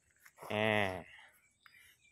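A man's voice saying one short held word about half a second in; otherwise only quiet background.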